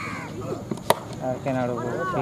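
A single sharp crack of a cricket bat striking the ball about a second in, with voices shouting around it.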